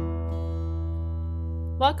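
Acoustic guitar theme music: after the plucked notes, a chord is left ringing and held over a steady low bass note. A voice starts speaking near the end.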